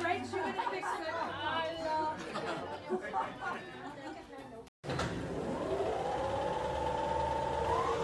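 Several people chatting together, cut off abruptly about halfway through. Then a smooth tone rises, holds and rises again, building into background music.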